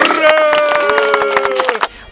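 Scattered claps and sharp knocks, with two voices holding a long drawn-out shout for about a second and a half.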